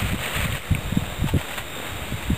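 Handling noise of cord being wrapped around a rolled blanket over dry leaves: rustling with a run of soft, irregular low thumps.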